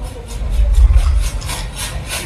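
Sound-test trailer soundtrack playing through a cinema's Dolby Atmos speaker system: a quick even pulsing about five times a second over a deep bass swell that builds about half a second in and peaks around one second.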